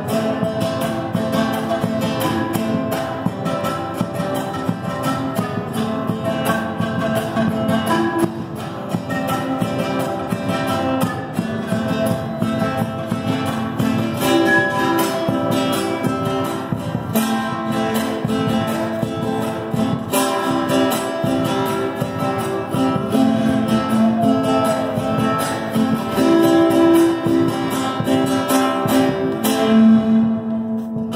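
Live acoustic folk music: a strummed guitar with panpipes playing the melody over a large rope-tuned wooden drum beaten in a steady rhythm.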